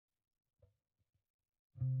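Near silence with a few faint ticks, then near the end a loud, sustained guitar note with effects starts suddenly and rings on: the opening note of the song.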